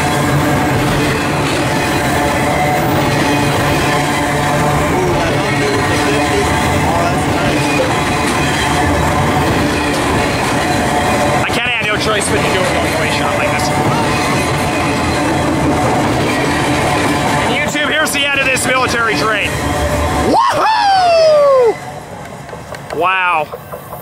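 Freight train of loaded flatcars rolling past close by: a steady rumble and clatter of wheels on rail with held tones over it. About 20 seconds in it breaks off and quieter, wavering sounds follow.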